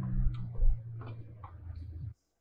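A Jeep's engine running with a steady low hum as it crawls a rocky trail, with several light clicks and ticks scattered through it and one low thump under a second in.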